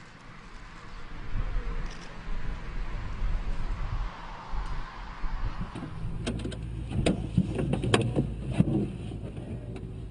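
Small Renault electric car running with a steady whir of motor and tyre noise and no engine sound, swelling and fading about four seconds in. It is followed by a run of sharp clicks and clunks, like doors or fittings being handled.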